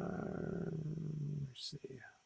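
A man's drawn-out hesitant "uh", held on one low pitch for about a second and a half. It is followed by a short hiss and a brief faint fragment of speech.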